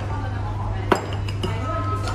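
Wooden chopsticks clinking and scraping against a ceramic bowl as noodles are tossed and mixed, with one sharp knock about a second in.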